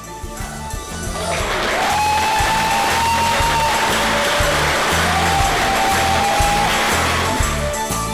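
Applause from a group, swelling about a second in and dying away near the end, over background music with a steady beat.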